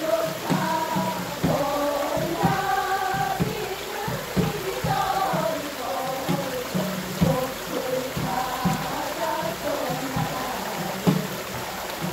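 Music: several voices sing a melody together over frequent low thumps, against a steady hiss.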